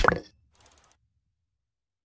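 A short pop sound effect from an animated logo reveal, with a quick upward sweep in pitch, followed by a few faint ticks.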